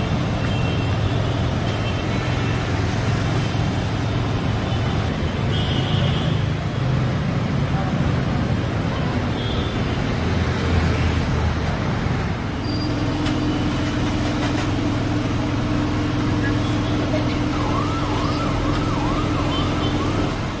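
Steady city road traffic noise from cars and motorbikes. Near the end an emergency vehicle's siren wails, rising and falling several times, and a steady hum sets in about two-thirds of the way through.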